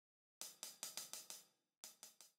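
Sampled drum kit from Groove Agent SE playing back a programmed rock pattern, faint: quick, even hi-hat strokes about five a second over drum hits, starting about half a second in and stopping abruptly near the end.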